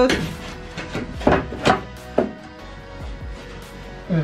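A handful of sharp wooden knocks as a cut plywood subfloor panel is pushed and tapped into place on the van floor, with music playing underneath.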